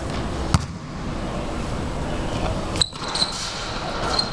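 A basketball bounced once on a hard gym court about half a second in, over a steady indoor-gym background. A short high squeak comes near three seconds in.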